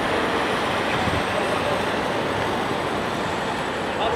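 A steady, even roar of background noise with faint voices in it, fading out near the end.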